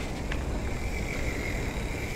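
Mountain bike riding down a dirt trail: a steady rumble of wind on the microphone and tyres rolling over dirt, with a few light ticks. A faint, thin, steady high whine joins about a third of the way in.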